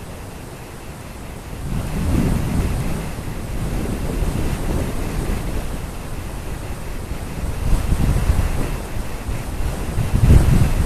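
Wind buffeting the microphone of a camera on a low-flying RC plane. It is a low rushing rumble that swells about two seconds in and again near the end.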